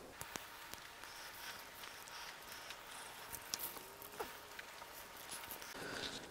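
Faint crackling of a small fatwood fire burning in a Solo Stove: scattered small ticks and pops over a quiet outdoor hiss.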